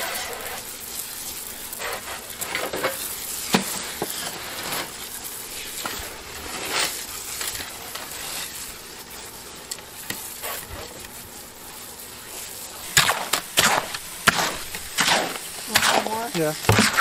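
Concrete mix being worked with a mixing hoe in a plastic wheelbarrow: repeated scraping strokes of the blade through the wet, gravelly mix over a steady hiss of water from a hose spraying in. The strokes grow louder and quicker near the end.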